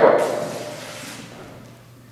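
A newspaper being torn apart by hand, one long ripping rustle that fades out over the first second or so.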